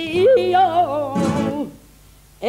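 A female flamenco singer sings a long, ornamented phrase with a wavering pitch, over a flamenco guitar accompaniment. The phrase ends about one and a half seconds in.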